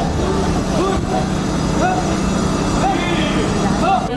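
Steady low hum of city traffic with scattered voices of a crowd of onlookers.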